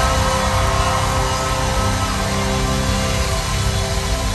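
Live band playing an instrumental passage of long held chords, heard from the audience in a concert hall.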